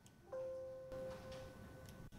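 Windows system alert chime sounding once as a warning dialog pops up asking to confirm closing the terminal session. It is a single soft chime that starts a moment in and fades away over about a second and a half.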